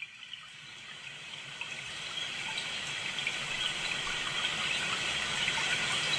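Water cascading over a small waterfall: a steady rush of flowing water that fades in from silence and grows gradually louder.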